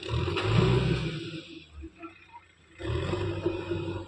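JCB backhoe loader's diesel engine revving hard twice under working load: one burst about a second and a half long, then a second burst starting about three seconds in.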